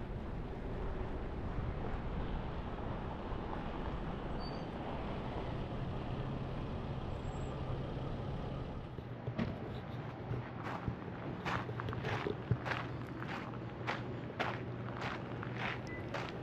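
Footsteps crunching on gravel, about one and a half steps a second, starting about nine seconds in. Under them, and alone before them, a steady low rumble.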